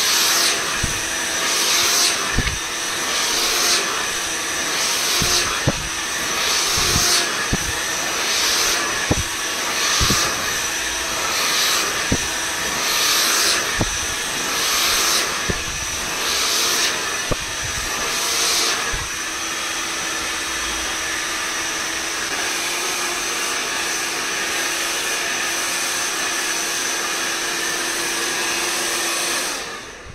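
Handheld hair dryer running steadily, blowing on hair being brushed out with a paddle brush. The air noise swells and dips about once a second for the first twenty seconds, then holds steady and cuts off near the end.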